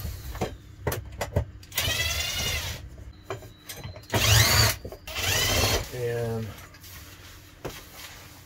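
Bosch 12-volt cordless drill/driver run in three short bursts, its motor whine rising and falling with the trigger, driving screws to fix the end of a shower rod to the wall, with a few sharp clicks before the first burst.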